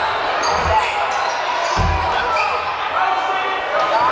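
A basketball bouncing on a hardwood gym floor, with a couple of low thuds about half a second and two seconds in, over the steady chatter of a crowd in the gymnasium.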